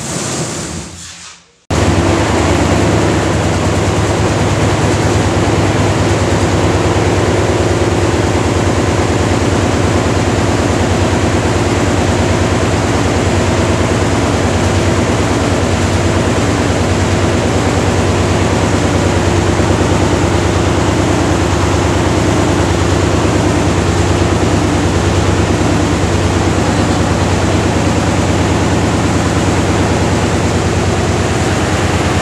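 Concrete vibrating table switched on about two seconds in, its motor running with a loud, steady hum as concrete in the plastic paver moulds on its top is compacted.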